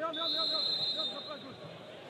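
Referee's pea whistle blown once, a steady high note lasting about a second that signals the free kick may be taken, with voices in the background.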